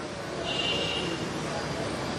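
Steady background noise in a pause between speech, with a faint high-pitched tone from about half a second in to just past one second.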